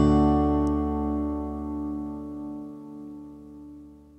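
The final chord of a folk song ringing out on acoustic guitar, with no new strums, slowly dying away.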